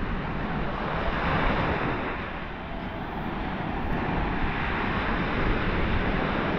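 Small waves washing onto a sandy beach, their steady noise easing a little a few seconds in and swelling again, with wind buffeting the microphone as a low rumble.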